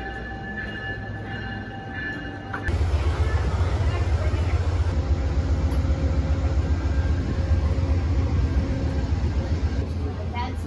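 A few seconds of music with steady held notes, cutting suddenly to a loud low rumble with a steady hum beside a standing Amtrak Superliner train at the platform.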